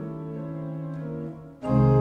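Church pipe organ playing sustained chords, soft at first; about one and a half seconds in, a much louder full chord comes in with deep bass notes.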